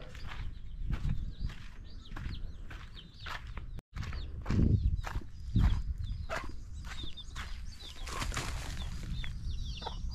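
Chickens clucking and chirping in the background, mixed with footsteps on dirt and knocks from a handheld camera. The sound drops out for a moment just before four seconds in.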